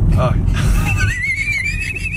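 Steady low rumble of a car cabin on the move. Over it comes a brief vocal sound, then about halfway through a high, thin, whistle-like tone that rises and then warbles up and down.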